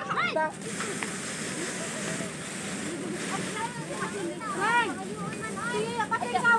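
Rice threshing machine running with a steady rushing noise as rice stalks are fed into it. Children's voices call out over it, mostly in the second half.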